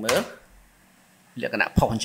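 Speech for a moment, then a pause of about a second, then more speech with one brief sharp click near the end.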